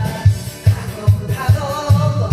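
Karaoke backing track of a Korean trot song with a steady bass beat about twice a second, and a woman singing along into the karaoke microphone.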